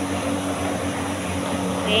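Vacuum cleaner running steadily on a carpet: a continuous whirring motor drone with a low hum under it.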